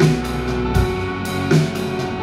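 Live band playing an instrumental passage: a drum kit keeps a steady beat, with a bass-drum thump about every three-quarters of a second and cymbal strokes between, over guitar and keyboard.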